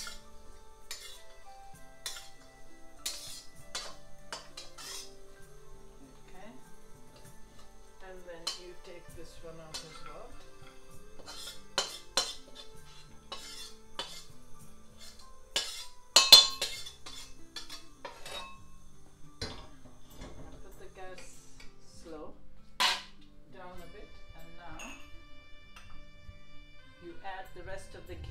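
A metal spatula clinking and scraping against a metal kadai as roasted nuts are stirred, then scraped out of the tipped pan onto a plate, with irregular clicks throughout and one loud clang about two-thirds of the way through. Faint background music.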